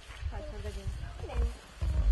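Untranscribed voices talking in the background, with low rumbles that swell twice, the louder one just before the end.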